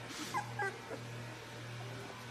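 Young puppies giving a few short, high squeaks and whimpers around half a second in, over a steady low hum.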